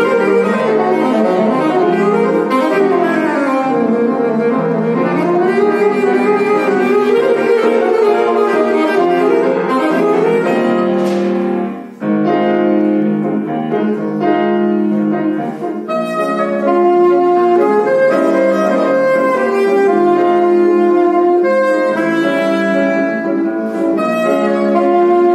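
Alto saxophone with grand piano accompaniment. The saxophone plays fast runs sweeping up and down. About halfway through there is a brief break, and then it moves to separate, held notes.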